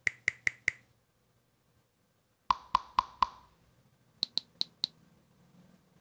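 A short percussive one-shot sample in the iMaschine app, played four times in quick succession, then four times pitched lower, then four times pitched higher, as its pitch setting is changed.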